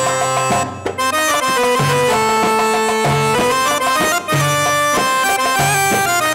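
Live Arabic music: an accordion plays a reedy, sustained melody over darbuka hand-drum strokes.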